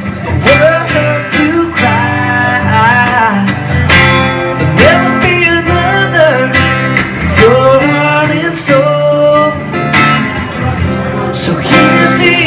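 Two acoustic guitars playing a blues-rock instrumental passage: one keeps a strummed rhythm while the other plays lead lines with bent, sliding notes.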